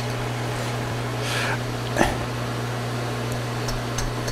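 Metal lathe running with its chuck spinning, a steady hum, with one short click about two seconds in.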